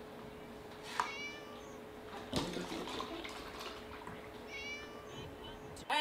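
Kitten mewing twice with short, high-pitched mews, once about a second in and again near the end, over a faint steady hum. A sharp knock comes in between.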